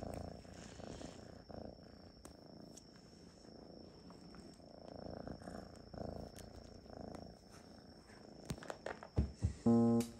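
A cat purring close to the microphone: a soft, low rumble that swells and fades in a slow rhythm. Near the end come a few soft knocks, and then piano music begins.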